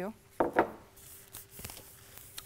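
A couple of sharp knocks about half a second in, then faint light clicks and rubbing: craft materials and containers being handled on a wooden worktable.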